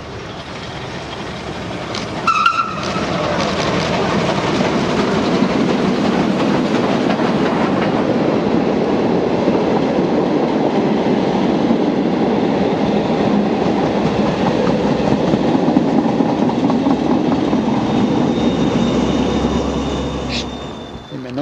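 Steam-hauled train (SNCF 140 C 38 locomotive and its coaches) passing close by. It builds over the first few seconds to a loud, steady rumble and clatter of wheels on rail, then eases slightly near the end. A brief sharp, high-pitched sound comes about two seconds in.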